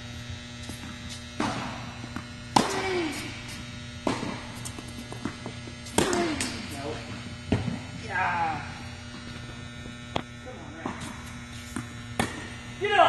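Tennis ball struck by rackets and bouncing on an indoor hard court during a rally: about five sharp hits, one every second and a half or so, each echoing in the large hall. A steady low hum runs underneath.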